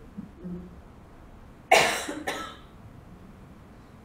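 A person coughing twice, about half a second apart, the first cough the louder.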